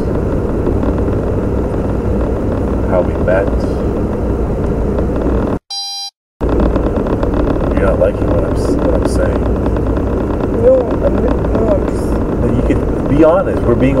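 Muffled, hard-to-make-out conversation from a personal audio recording, buried under a steady low rumble and noise. About six seconds in the sound cuts out for under a second, and a short electronic beep sounds in the gap.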